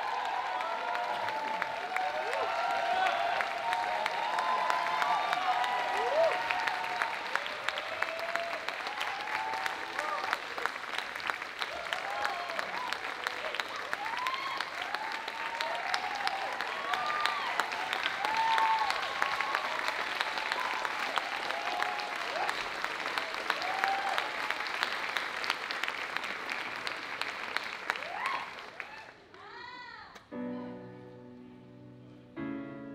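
Audience applauding and cheering, with whoops rising and falling over dense clapping; the applause dies away near the end.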